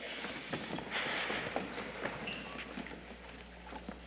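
Scattered footsteps, shuffling and light knocks of a group of performers getting down onto a stage floor into push-up position, with a brief rustle about a second in.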